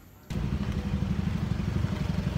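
Outdoor street noise: a steady low rumble that starts abruptly about a third of a second in, after a brief quiet moment.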